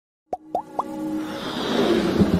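Electronic intro sting: three quick rising bloops about a quarter second apart, then a swell of electronic music that grows steadily louder.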